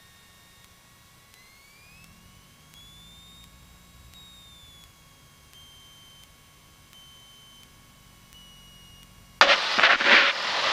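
A small propeller plane's engine at low taxi power, heard faintly through the cockpit audio feed as a low hum with a thin high whine that rises over a couple of seconds, holds, and slowly eases back down. Near the end a loud rush of noise lasts about a second and a half.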